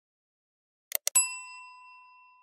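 Two quick mouse-click sound effects about a second in, followed at once by a bright bell ding that rings on and slowly fades: the notification-bell sound effect of an animated subscribe button.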